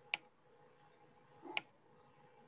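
Two short, sharp clicks about a second and a half apart, over a faint steady hum.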